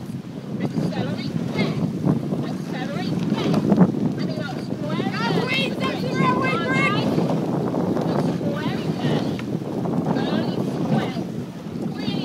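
Wind buffeting the microphone throughout, with voices shouting on top, loudest about halfway through.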